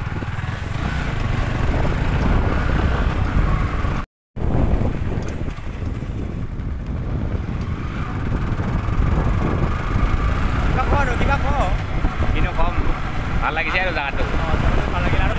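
Motorcycle running at riding speed on a dirt road, a steady low engine and road rumble. The sound drops out completely for a moment about four seconds in.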